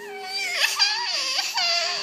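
A small child's high-pitched, crying wail that wavers up and down in pitch.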